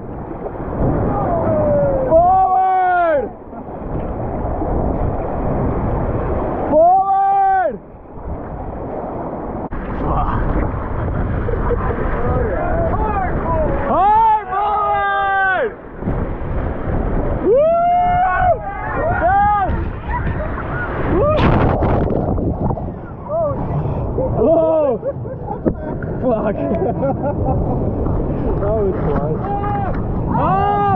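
Whitewater rapids rushing and churning loudly around an inflatable raft as it rides through big standing waves. About half a dozen short yells and whoops from the rafters rise out of the water noise every few seconds.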